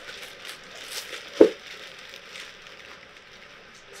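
Clear plastic bag crinkling and rustling as a mask wrapped in it is handled and lifted, with small crackles and one sharp knock about one and a half seconds in.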